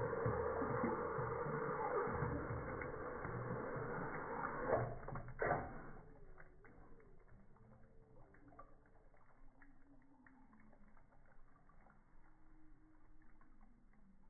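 Water running into a farm drinking trough at its inlet valve, a steady rush that ends after a couple of knocks about six seconds in. Faint drips into the trough water follow.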